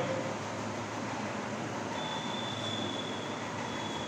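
Marker writing on a whiteboard over steady room noise, with a thin, steady high squeak through the second half.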